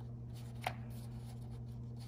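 Fingers handling the edge of a picture-book page: one short sharp paper tick about two-thirds of a second in, over a steady low hum.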